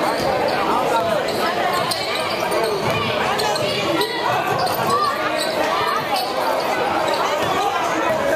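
A basketball being dribbled on a hardwood gym floor, with crowd voices and chatter throughout.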